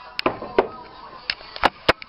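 About five sharp knocks and clinks of dishes being moved about in a kitchen sink, with the two loudest coming close together near the end.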